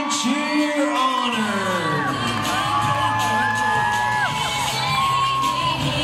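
Crowd cheering and whooping, with many overlapping high-pitched yells. A steady low hum joins about a second and a half in.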